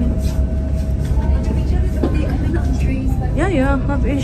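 Gornergrat rack railway train running, heard from inside the carriage as a steady low rumble, with voices over it near the end.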